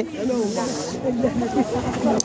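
A soft hiss for about a second, over faint background voices.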